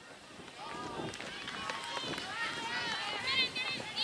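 Several spectators shouting and cheering at once, high overlapping voices with no clear words. The shouts start about a second in and grow louder and more crowded toward the end.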